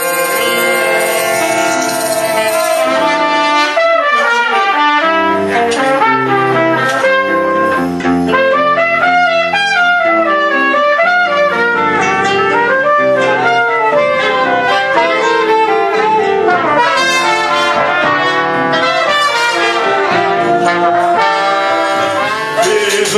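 Choro ensemble playing a tune, with a trumpet and a saxophone carrying the melody in moving note runs.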